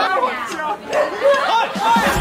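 Several people talking over each other in lively chatter.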